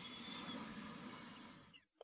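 A woman's faint, slow breath in through the nose, a soft hiss that swells and then fades away shortly before the end.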